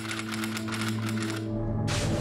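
Typewriter keys clacking out a title in a quick, even run, over a low held musical drone. The typing stops about one and a half seconds in, and a sudden loud noisy hit follows near the end.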